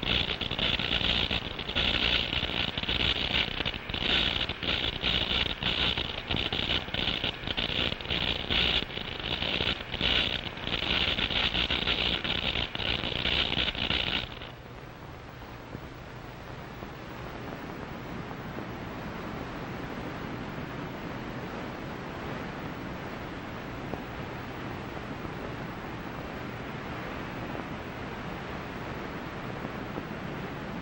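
Mine detector sweeping for metal: a loud, high-pitched crackling buzz that flickers on and off, cutting off suddenly about halfway through. After that, a steady surf-like hiss with a faint low hum.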